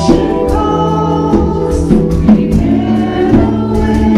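A small worship band playing live: several voices singing together through microphones over keyboard, with regular hand-drum hits.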